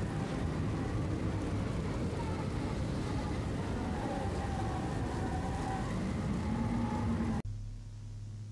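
Loud VHS-style tape static with faint wavering, warped tones beneath it. It cuts off suddenly about seven and a half seconds in, leaving a low hum.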